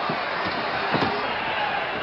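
Basketball bounced on a hardwood court, a few thumps about half a second apart, over steady arena crowd noise on old, band-limited broadcast audio.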